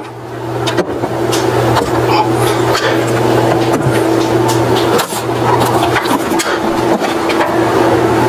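A steady low mechanical hum, like a motor running, with short clicks and knocks as objects are handled on a shelf.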